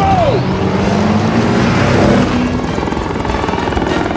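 Action-film sound mix of a heavy truck's engine working hard together with a helicopter's rotor and turbine, loud and dense. The engine pitch rises slightly about halfway through.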